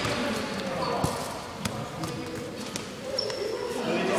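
Futsal ball being kicked and bouncing on an indoor court floor: a few sharp knocks, with short high squeaks of sneakers on the floor and the distant voices of players.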